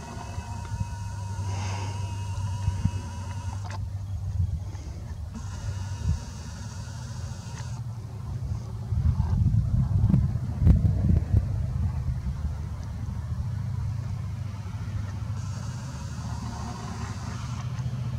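Low, steady rumble of road traffic, swelling briefly about halfway through, with small bumps of handling noise from a handheld camera.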